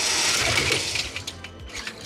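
An FRC competition robot's motors and gearing running its intake, elevator and arm through an automatic handoff sequence: a loud mechanical whirring that fades out after about a second.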